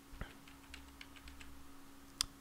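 Faint computer keyboard typing: a handful of separate keystrokes as a short name is entered.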